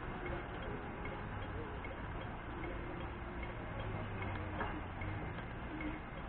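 Audible crossing signal at a traffic-light crossing ticking slowly and evenly, a little more than once a second: the slow wait tick given while the crossing shows red. Steady traffic and wind noise underneath.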